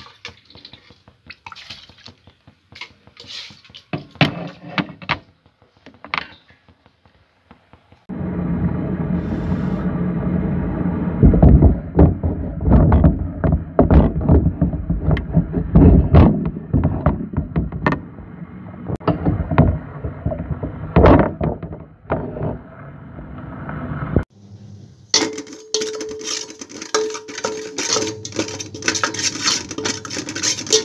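Steel kitchen vessels clinking and knocking as they are handled, then water running hard into a steel pot, starting and stopping abruptly, for about sixteen seconds. Near the end a higher hiss with metal clatter follows.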